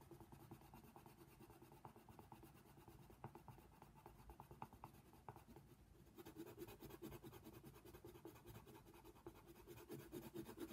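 Coloured pencil shading on paper, faint and steady, in fast short back-and-forth scratching strokes. The strokes grow fuller and a little louder about six seconds in.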